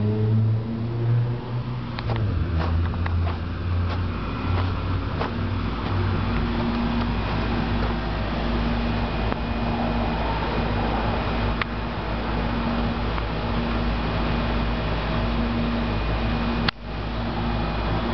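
Relatively new outdoor air-conditioning condenser units running with a steady low hum. A few light clicks come in the first few seconds, and the sound cuts out briefly about a second before the end.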